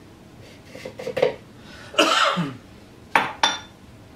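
Kitchenware clinking as a glass measuring cup of flour is emptied into a mixing bowl: soft knocks in the first second or so, a louder short rough sound about halfway, and two sharp ringing clinks a little after three seconds in.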